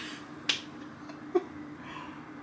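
A single sharp click about half a second in, then a second brief sound a little under a second later, as a mug is raised to drink. A faint steady hum runs underneath.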